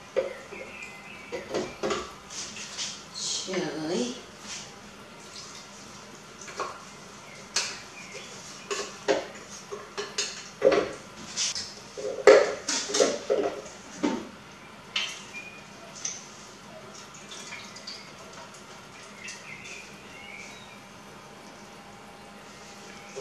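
Irregular knocks and clinks of kitchenware: garlic cloves tipped from a bowl into a blender jar, then a wooden spoon tapping and pushing against the jar. The clatter is busiest in the middle and thins out near the end.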